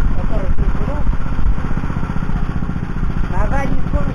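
Oka walk-behind tractor's single-cylinder petrol engine running steadily while the machine stands still. Voices are heard faintly over the engine.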